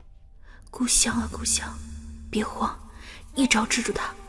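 Hushed dialogue speech in three short phrases, starting about a second in, over faint background music.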